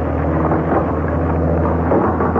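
Steady low drone of a motorboat engine, a radio-drama sound effect, running unchanged through the pause.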